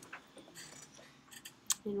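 A few faint clicks from working at a computer over quiet room tone, the loudest just before a voice starts near the end.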